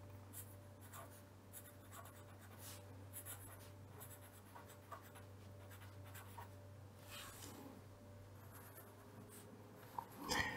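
Fine-tip pen writing on paper: faint, intermittent scratching of the pen strokes over a steady low hum.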